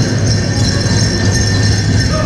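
Powwow drum beaten steadily, with the jingling of fancy dancers' bells on top. The singers' voices are faint in this stretch.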